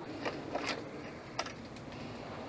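Three short, sharp clicks over a steady low background noise.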